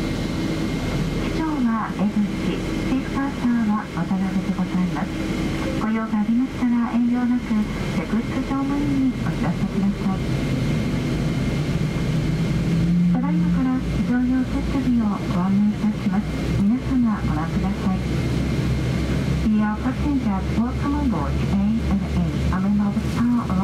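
Cabin crew announcement over the passenger PA, speaking almost continuously, over the steady low hum of a Boeing 777-200 cabin during pushback. The low hum grows louder about halfway through.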